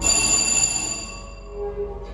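Elevator car chime sounding once: a bright electronic ding right at the start that fades over about a second and a half, with a short lower tone near the end. Underneath it runs the steady hum of the dry-powered hydraulic power unit's motor.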